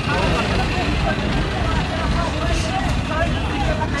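Many people talking at once, faint and indistinct, over a steady low rumble.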